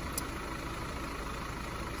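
A steady low mechanical hum, with a faint click about a quarter second in.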